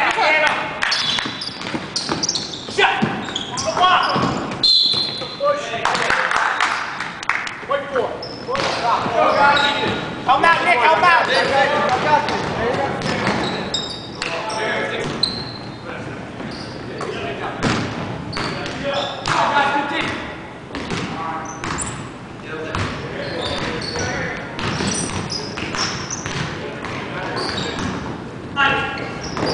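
Basketball bouncing on a hardwood gym floor during play, with players' voices and calls echoing around the gym.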